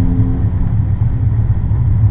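Steady low rumble of a car driving along a road, heard from inside the cabin, with the last held note of music dying away in the first half second.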